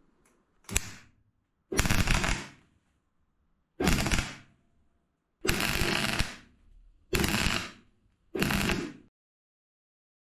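Portable gas MIG welder, run out of shielding gas, laying short bursts of weld over a hole in a steel car bulkhead: six crackling, spitting bursts, a brief blip first and then five of about half a second to a second each, with silence between.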